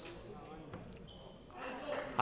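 Faint sports-hall ambience with a few handball bounces on the court floor.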